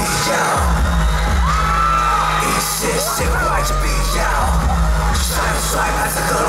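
Loud live pop music with a heavy pulsing bass beat. High vocal cries ride over it, one held a little over a second and another wavering about halfway through.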